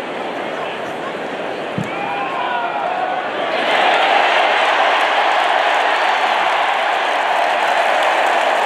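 Football stadium crowd noise with scattered individual calls, swelling into loud sustained cheering about three and a half seconds in as the home team breaks a big run.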